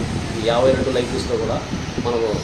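Speech only: a man talking, over a steady background hiss.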